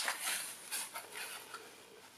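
Faint rustling and light ticks of small 3D-printed plastic pieces being handled between the fingers over cloth, dying away toward the end.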